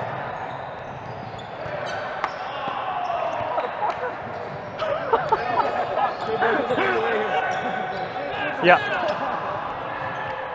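Volleyball rally indoors: a few sharp slaps of the ball being hit in the first few seconds, then players' voices and a shout of 'yeah' near the end as the point ends.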